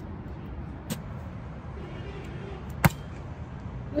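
A volleyball bounced once on the hard court, then the sharp slap of a hand striking it on an overhead serve just before three seconds in, the loudest sound, over a steady low rumble.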